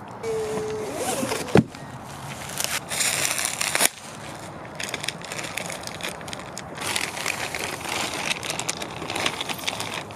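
Clear plastic wrapping crinkling and crackling as a boxed item is unwrapped by hand, with one sharp knock about one and a half seconds in.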